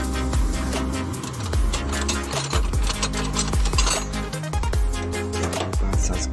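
Background electronic music with heavy sustained bass and a steady beat.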